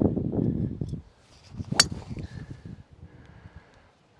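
A Wilson Staff DynaPower driver striking a golf ball off the tee: one sharp, short crack of impact about two seconds in.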